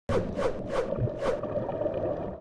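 Underwater sound effect: a low watery rumble with four quick gushes of bubbles in the first second and a half, then a steadier rumble.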